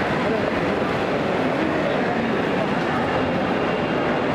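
Crowd hubbub: many overlapping voices over a steady, dense background noise, with no single voice standing out.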